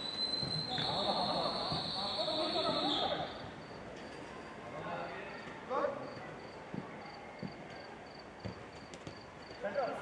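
Players calling out during a five-a-side football game on an artificial-turf pitch, with a few short thuds of the ball being kicked in the second half. A steady high tone sounds through the first three seconds.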